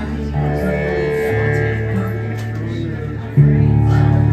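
Acoustic guitars playing sustained notes, with a louder low note or chord coming in sharply about three and a half seconds in.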